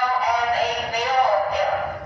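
A high-pitched voice singing, its pitch gliding up and down in a sing-song line.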